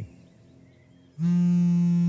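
Telephone ringing signal: a steady buzzy electronic tone comes in about a second in and holds for about a second before cutting off, the first beat of an on-off ringing pattern of an outgoing call.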